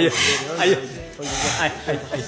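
A person's voice making wavering, melodic vocal sounds. Breathy noise comes twice: about a quarter-second in and about a second and a half in.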